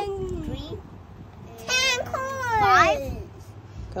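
A young child's high-pitched wordless vocalizing: a drawn-out call falling in pitch at the start, then a longer call about two seconds in that rises and then slides down.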